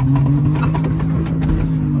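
Honda Acty mini truck's small engine running steadily under way, heard inside the cab over tyre and road noise. Its pitch holds even and sags slightly near the end as it eases off.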